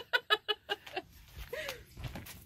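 A woman laughing in a quick run of short "ha" pulses, about five a second, that fade out about a second in.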